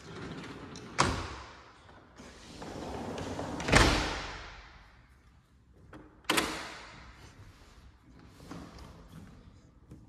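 A door being worked, most likely a sliding door: a sharp knock about a second in, a rolling noise that builds into a loud bang near four seconds, and another bang a little after six seconds, each dying away, with a softer thud later.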